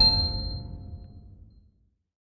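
Closing chime of a logo jingle: a bright, bell-like chord struck at the start, ringing out over a low rumble and fading away over about a second and a half.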